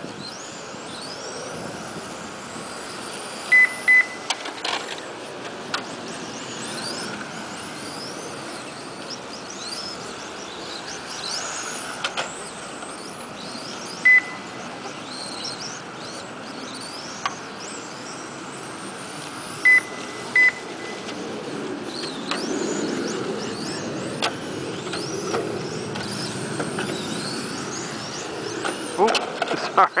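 Radio-controlled touring cars racing, their motors whining in quick rising and falling glides as they speed up and slow down through the corners. A short electronic beep from the lap counter sounds a few times, twice in quick pairs.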